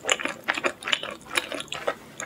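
A person chewing a mouthful of hot-sauce-covered pizza close to the microphone: a quick, uneven run of short smacking and clicking mouth sounds.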